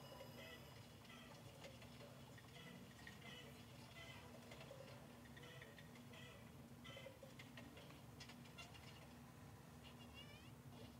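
Near silence: quiet room tone with a faint steady hum and scattered faint ticks and rustles from handling makeup.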